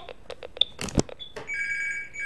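A telephone ringing with an electronic ring, starting about halfway through, after a few faint clicks and a sharp knock about a second in.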